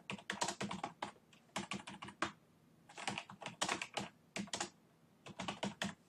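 Typing on a computer keyboard: several quick runs of keystrokes with short pauses between them.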